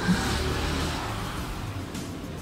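A length of yarn being drawn through crochet fabric with a yarn needle: a long rubbing swish that sets in sharply and fades away over about a second and a half.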